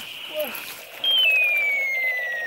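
Battery-powered light-up toy gun firing its electronic sound effect: a high tone that starts about a second in and glides slowly downward, over a fast pulsing buzz.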